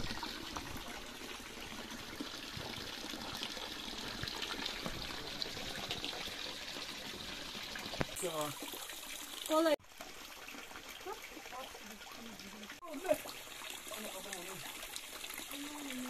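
Spring water trickling steadily from bamboo spouts, falling in thin streams onto stones and into a shallow pool. Brief voices come in a little past the middle.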